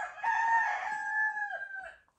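A recorded rooster crowing, played through a small desktop speaker: one long, held call that lasts almost two seconds and stops just before the end.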